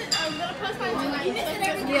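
Indistinct chatter of many diners' voices in a large, busy buffet dining room.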